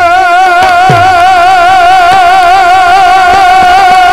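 Folk singer holding one long sung note with a wide, even vibrato, over a few drum strokes from the tabla accompaniment.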